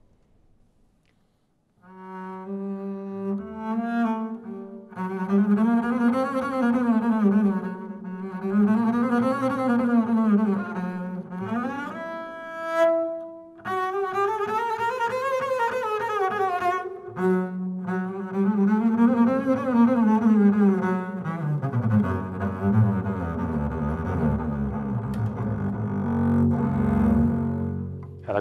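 Solo double bass, bowed, playing fast spiccato runs that sweep up and down in pitch in repeated arcs, with a brief high held note about halfway through. The playing starts about two seconds in, after a moment of silence.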